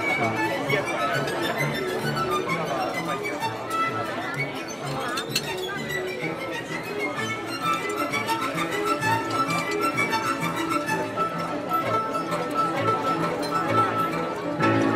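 Violin playing a melody over a steady low accompanying beat. About halfway through it settles into one long held high note.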